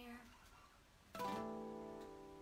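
Acoustic guitar: a single chord strummed a little over a second in and left ringing.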